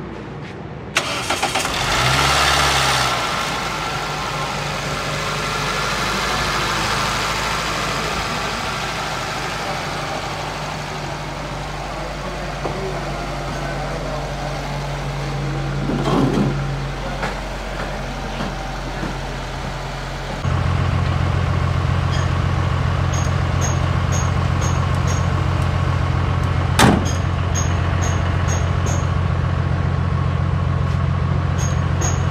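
Toyota Vitz's 2SZ 1.3-litre four-cylinder petrol engine starting about a second in and then idling steadily. Some twenty seconds in the engine hum turns abruptly louder and deeper, and a single sharp click comes near the end.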